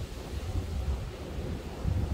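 Wind buffeting the phone's microphone: an uneven, gusting low rumble.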